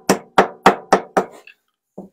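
Hammer tapping staples down into a painted wooden block: five quick blows, about four a second, each with a short metallic ring, stopping about a second and a half in.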